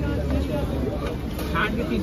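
Open-air vegetable market ambience: indistinct voices and chatter over a steady low rumble.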